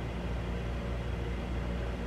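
Steady hum of a room air-conditioning unit, with a low drone and an even hiss that do not change.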